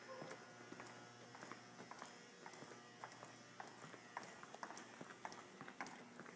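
Quiet footsteps on a hard tiled floor, faint clicks a few times a second, over a faint steady hum.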